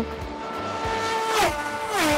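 Top Race V6 race car approaching at speed and passing close by, its engine note dropping sharply in pitch about a second and a half in as it goes past, louder toward the end.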